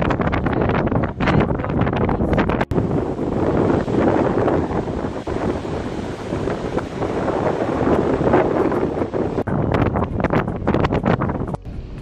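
Strong wind blowing across a phone's microphone in gusts, with surf breaking on the beach beneath it.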